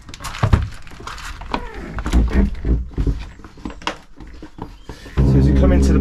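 The caravan's entrance door latch is released at the push-button handle and the door is opened, with a series of clicks, knocks and thunks as someone handles it and steps inside. A louder low steady sound comes in near the end.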